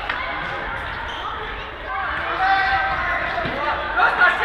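A football bouncing and being kicked on the hard floor of a sports hall during a game, with a sharp knock at the start and another near the end. Indistinct voices of players and spectators run underneath and get louder about halfway through.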